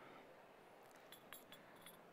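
Near silence: room tone with a few faint clinks of ceramic espresso cups and saucers being handled, in the second half.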